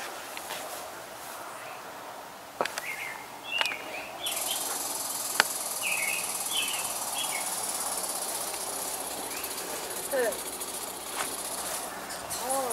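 Outdoor ambience: a steady high-pitched insect buzz sets in suddenly about four seconds in, with scattered short bird chirps and a couple of sharp clicks.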